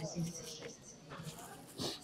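Quiet stretch of faint background voices, with one sharp click right at the start and a short rustle near the end.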